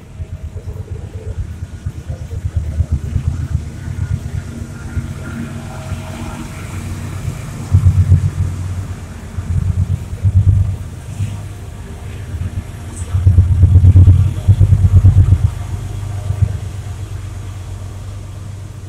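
Low rumble of street traffic that swells unevenly, with a small motorcycle passing close by about ten seconds in, and another loud surge of rumble around thirteen to fifteen seconds in.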